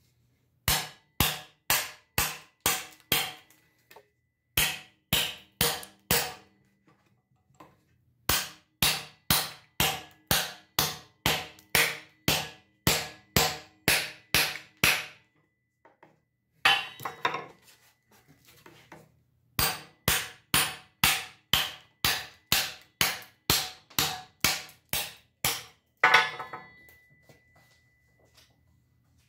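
A knife blade chopping into the edge of a wooden board clamped in a vise, in runs of sharp strikes about two a second: a chopping test of the blade's edge retention. Near the end there is a louder knock with a brief metallic ring.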